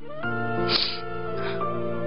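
Slow, sad background music of sustained notes that change pitch in steps, opening with a rising slide.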